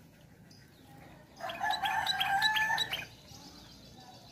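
A rooster crows once, for about a second and a half near the middle, with quick higher bird chirps over it. Before and after is only a low background.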